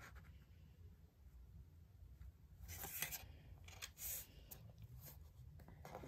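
Faint rustling and sliding of a paper square as it is folded in half and smoothed flat by hand on a cardboard board, with a few brief louder rustles in the middle.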